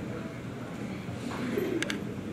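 Handling noise from a handheld microphone being passed from one person to another, with a few quick clicks near the end, over faint room murmur.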